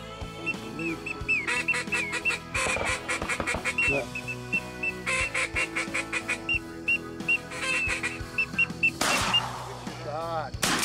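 A duck call blown in quick series of short, high notes and quacking calls, repeated throughout, over background music with steady held chords. About nine seconds in there is a sudden loud burst.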